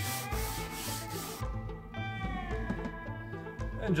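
A cloth rubbing oil finish into the walnut cabinet's wood in quick back-and-forth strokes, about three a second, stopping about a second and a half in. Background music plays throughout.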